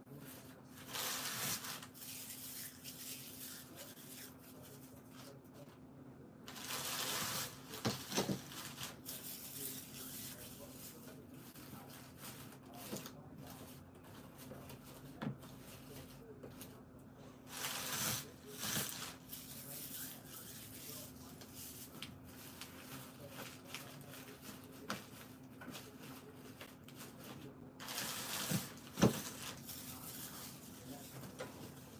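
Rustling as hands push and adjust items in a basket packed with green shred, in several short bursts with a sharper click near the end, over a faint steady hum.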